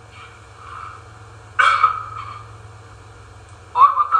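A dog barks once, sharply, about a second and a half in.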